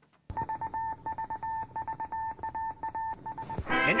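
A steady high beep switching on and off in short and long pulses over fast crackling clicks. It stops about three and a half seconds in, as music begins with a rising swoop.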